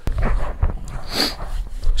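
Low wind rumble on the microphone, with a sharp click at the start and a short breathy vocal noise from the man about a second in.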